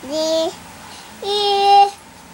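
A toddler singing two held notes. A short note slides up into pitch at the start, then a longer, higher and louder note comes about a second in.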